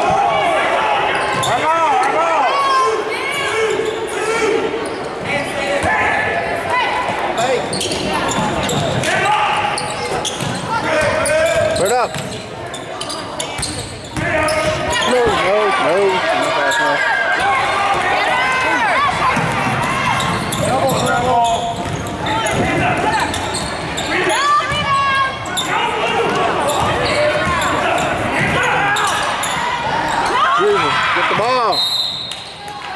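Basketball dribbled and bouncing on a hardwood gym floor during play, amid overlapping shouts and chatter from players and spectators, echoing in a large gym.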